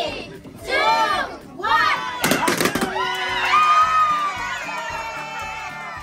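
Children shouting excitedly, then a quick cluster of sharp pops about two seconds in as several balloons burst almost together, followed by cheering with music.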